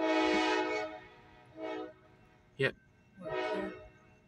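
Diesel locomotive's Nathan K5LA five-chime air horn sounding in a chord: a long blast of about a second, a short blast, then another blast near the end.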